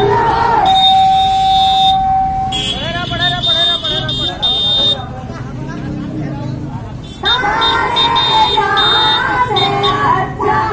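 Voices shouting patriotic slogans, with one steady held tone lasting about two seconds near the start and a quieter stretch after the middle.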